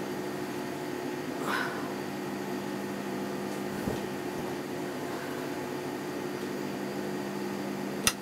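A steady low electric hum, with fabric rustling briefly about one and a half seconds in and a soft knock near four seconds.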